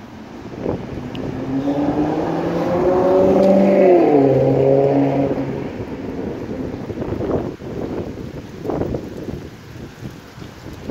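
A motor vehicle passing close by on the road, its engine note rising and growing louder as it approaches, then dropping in pitch as it goes past about four seconds in and fading away.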